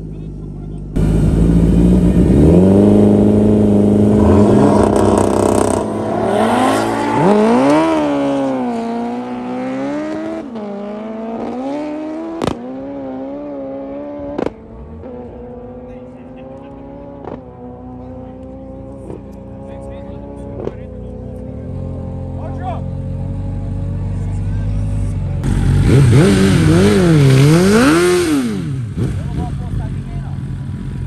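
Kawasaki Ninja H2 drag bike launching hard, its engine held at steady revs, then rising and dropping through the gear changes as it pulls away and fades down the strip. Near the end a second sport bike is revved up and down in a burnout.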